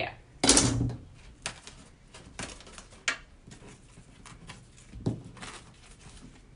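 Handling noises on a tabletop: a brief loud rustle about half a second in, then scattered light clicks and knocks as the canvas and tools are moved about.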